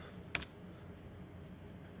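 A single sharp click from a key being pressed on a Casio fx-82AU PLUS II scientific calculator, about a third of a second in. It is the keypress that runs the typed calculation.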